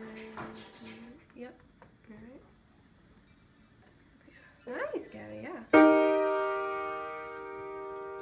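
A D minor triad struck once on an upright piano about two thirds of the way in, then left ringing and slowly fading; it is the third chord of the B-flat major scale.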